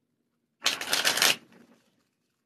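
A deck of playing cards riffled in the hands: one quick burst of rapid card flicks, a little under a second long, starting about half a second in and trailing off into a few faint flicks.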